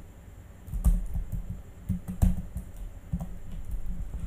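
Computer keyboard keys being typed: several separate key clicks with short pauses between them.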